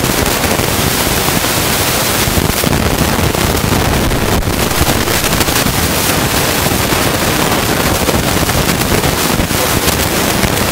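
Loud, steady crackling static filling the whole sound, with no clear voice coming through: the sign of a faulty or badly distorted recording.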